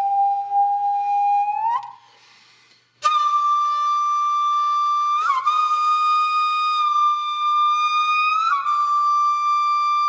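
Background music: a solo flute playing long held notes with short slides between them, breaking off for about a second near two seconds in before a higher note begins.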